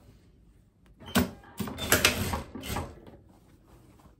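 Striped linen fabric rustling as it is bunched and pushed around by hand at the sewing machine, in loud, irregular bursts from about one second in to just before three seconds.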